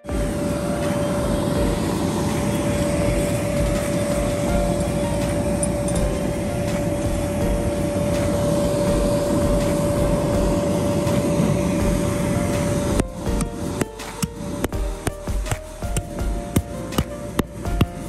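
Inflatable bounce house's electric blower running steadily: a loud, even rush of air with a steady hum. About thirteen seconds in it gives way to background music with a clicking beat.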